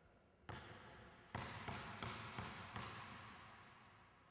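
A basketball dribbled on a hardwood gym floor, about six bounces in quick succession with the first on its own, echoing in a large hall: the pre-shot dribbles of a free-throw routine.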